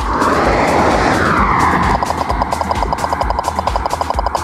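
A BMW SUV rushing past close by, a loud tyre-and-engine whoosh whose pitch rises then falls, lasting about two seconds, under background music with a steady beat.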